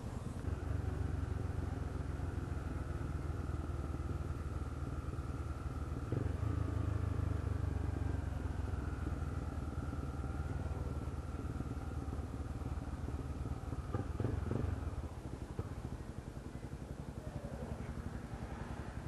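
Motorcycle engine running as the bike rides slowly through city traffic, a steady low hum. It grows a little louder about six seconds in, then drops off near the end as the bike slows to a stop.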